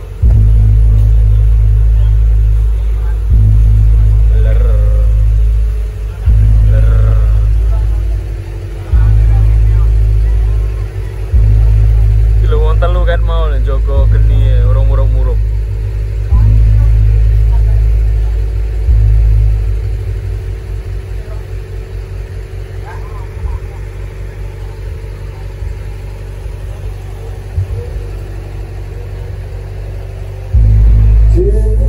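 Loud deep booms, each starting suddenly and fading over two to three seconds, repeating about every three seconds. From about two-thirds of the way in they give way to a lower, fluttering rumble. A short voice is heard near the middle.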